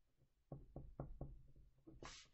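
Faint, quick taps of a pen writing on a paper worksheet, about seven light knocks of the pen tip against the paper and desk in the last second and a half.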